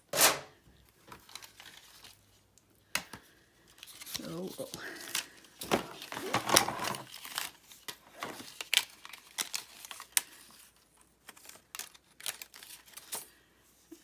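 Plastic die-cutting plates, a thin metal die and cut cardstock being handled. A sharp clack of a plate comes right at the start. Scattered clicks, scrapes and paper rustling follow as the cut pieces are pushed out of the die.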